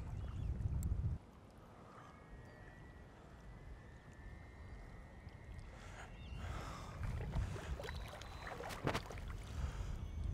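Wind buffeting the microphone for about the first second, then faint water lapping and splashing that grows a little louder in the second half as a hooked carp wallows at the surface.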